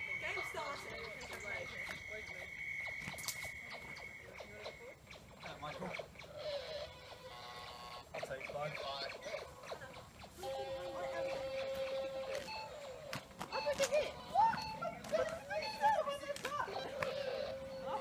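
Faint, indistinct voices of people talking. A long steady high tone is held for about the first five seconds, and a lower steady tone comes in partway through and holds to the end.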